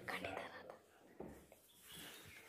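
Faint low voice, muttering or whispering, in the first moments, then near quiet with a small click.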